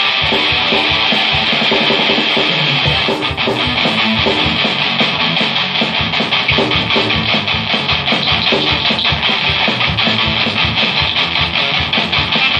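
Ibanez electric guitar played through an amplifier, a continuous run of picked notes and chords.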